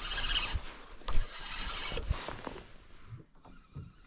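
Spinning reel being wound against a hooked fish, a steady whirring hiss with a few handling knocks that dies away about three seconds in.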